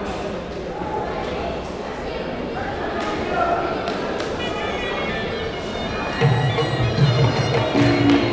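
Voices murmuring in a large hall. About four seconds in, traditional Muay Thai sarama music starts with a reedy pipe melody, and about six seconds in a louder drum beat joins it.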